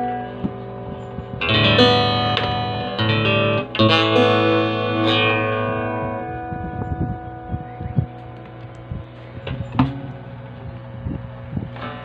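Cutaway acoustic guitar played fingerstyle, chords ringing out with fresh plucks about one and a half, three and four seconds in. From about halfway the playing grows softer and sparser, with scattered light knocks and taps.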